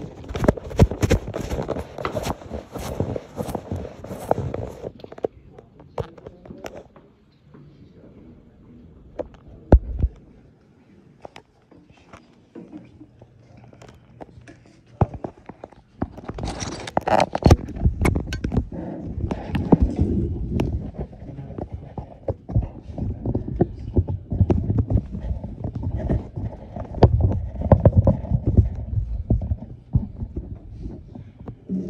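Handling noise from a phone being moved and set up: rubbing, with many small clicks and knocks, busiest in the first few seconds. Indistinct voices murmur in the room from about halfway through.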